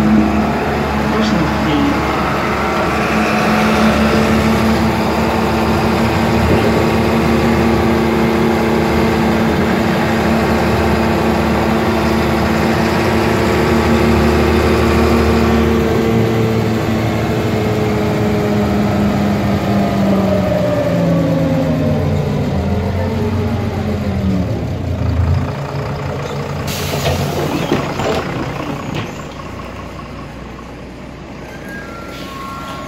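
Ikarus 412 city bus heard from inside: the diesel engine and driveline run steadily with a whine, then the whine falls in pitch over about ten seconds as the bus slows to a stop. A short burst of air hiss from the bus's pneumatics comes a few seconds before the end.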